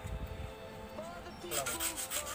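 Metal scraping and rubbing on a tractor's rear axle housing as caked mud and grease are cleaned out, with a run of quick rough strokes in the last half second.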